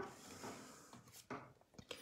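Very faint rubbing with a few light ticks, close to silence: a line being drawn along a quilting template.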